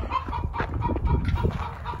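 Chickens clucking in short, scattered notes over a steady low rumble.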